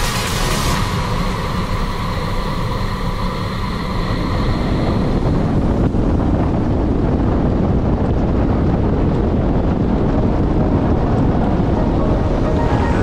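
Wind buffeting an action camera's microphone over the rumble of a kite buggy running at speed across hard beach sand, a steady dense rush with no engine note. Music fades out over the first few seconds.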